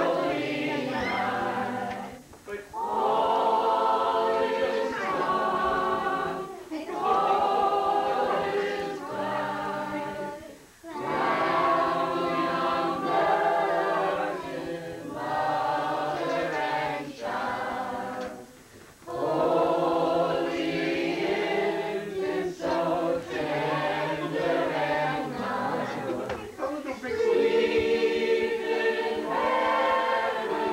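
A group of people singing together unaccompanied, in long phrases with short pauses for breath between them.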